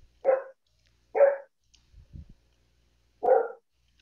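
A dog barking three times: two short barks close together near the start, and a third about three seconds in.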